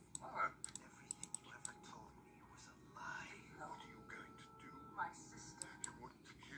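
Faint, quiet film dialogue heard through laptop speakers, with a few sharp clicks in the first two seconds and again near the end.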